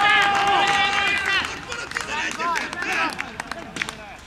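Men's voices shouting together as a goal goes in, with one long held shout in the first second and a half, then dying down to scattered calls.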